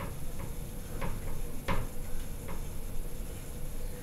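Four or so light clicks and taps of a metal wire clothes-drying rack as a kitten shifts and settles on its shelf, the loudest a little before halfway in.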